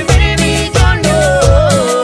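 Cumbia band playing an instrumental passage: a keyboard melody line over bass and percussion, with a steady dance beat.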